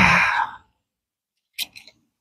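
A man's breathy sigh, trailing off within the first second, then a few faint short clicks near the end.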